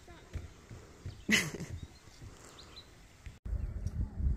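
A short, loud burst of a person's voice about a second in, over a faint outdoor background. After a sudden cut near the end, a louder low rumble takes over.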